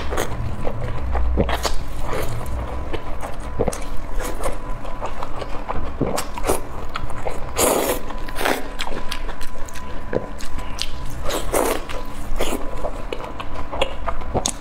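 Biting and chewing of soft roasted chili peppers coated in oily seasoning: wet squishing and smacking mouth sounds with frequent small clicks, a few louder bites about halfway through and near the end.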